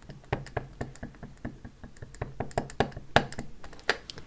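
Clear acrylic stamp block dabbed again and again onto a black ink pad to ink the stamp: a run of quick, light clicking taps, several a second, with two louder knocks near the end.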